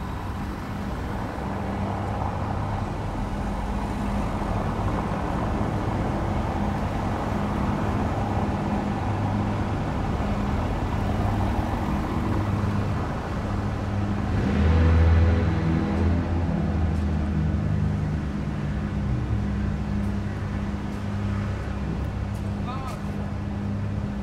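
City road traffic: engines running and tyres on the road, with one vehicle passing louder about fifteen seconds in.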